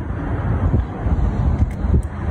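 Wind buffeting an exposed phone microphone: a loud, gusting low rumble.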